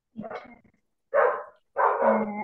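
A dog barking three times, the first quieter and the last two loud.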